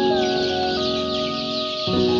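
A crowd of young chicks peeping continuously, many short, high, downward-sliding calls overlapping. Background music with held chords plays under them, changing chord just before the end.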